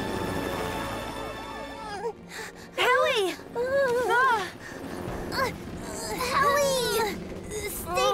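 High-pitched cartoon voice crying out in distress, a string of separate rising-and-falling wails that starts about three seconds in, over background music. Steady held tones sound for the first two seconds and then stop.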